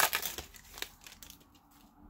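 A foil trading-card pack wrapper crinkling as it is torn open and pulled apart by hand. It is loudest in the first half second, with a couple of light crackles after, and dies away about halfway through.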